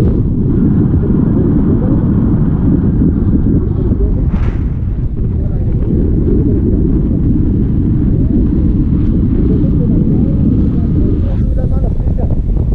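Wind from the flight buffeting an action camera's microphone during a tandem paraglider flight, a loud steady low rumble.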